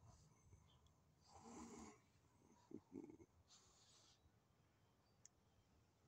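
Near silence, with a few faint, soft breath-like swells and one tiny tick.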